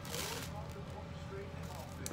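Wrapping paper crinkling and tearing as a baby rips it, fading out about half a second in. Quieter rustling follows, with a soft voice briefly.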